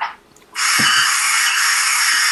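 Electric pencil sharpener running on a pencil, a steady grinding noise that starts about half a second in. The pencil's lead has just broken and is being sharpened again.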